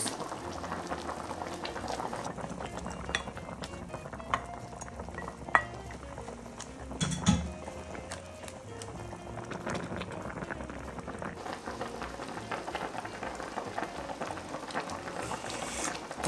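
Miso fish broth bubbling at a steady boil in an electric hot pot, with a few light clinks and knocks as bean sprouts are stirred in with a wooden spatula.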